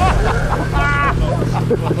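Snowmobile engine running steadily as the sled ploughs through deep snow into small trees, with a person's voice over it.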